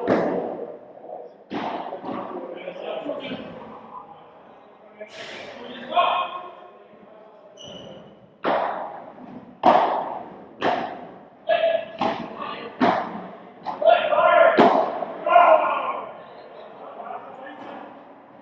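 Padel ball struck by rackets and bouncing off the court and glass walls: about a dozen sharp, irregularly spaced knocks that ring on in the large indoor hall, with players' voices in between.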